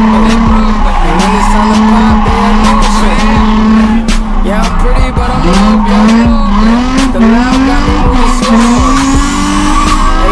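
Nissan 350Z's V6 engine held at high revs while the rear tires squeal in a drift. Just before halfway the revs dip, then climb again in a series of short surges.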